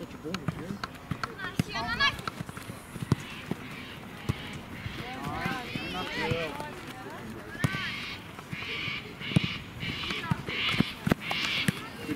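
Voices shouting and calling out across an outdoor soccer match, high-pitched and scattered, busiest in the second half. Many short thumps and knocks are mixed in.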